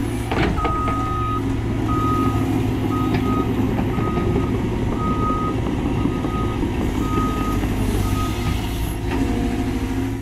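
Cat 320GC excavator's diesel engine running steadily under hydraulic load as the bucket digs, with a short knock near the start. Over it a backup alarm beeps on and off about once a second, stopping near the end.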